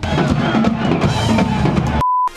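Live band playing loudly with drum kit, bass and electric guitar, starting abruptly.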